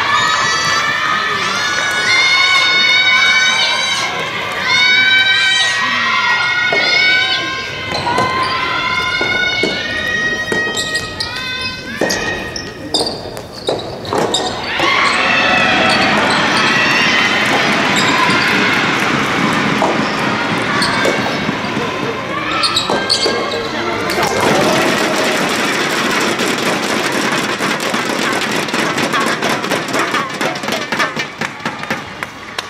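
Soft tennis match in a gymnasium hall. Voices shout cheers from the stands, and sharp hits of the soft rubber ball and rackets mark the rally. Crowd cheering and applause come near the end, after the point is won.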